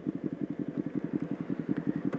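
Motorcycle engine running steadily at low speed, a rapid, even pulsing of exhaust beats.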